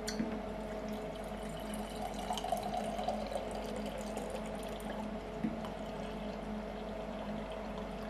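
Uncarbonated beer pouring from a stainless-steel keg tap into a glass in a steady, fairly quiet stream, with a click as the tap opens at the start. A faint steady hum runs underneath.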